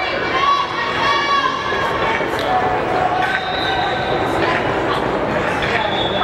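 Voices of players and people at the field shouting and calling out, echoing in a large indoor sports hall, with a few scattered knocks in the background.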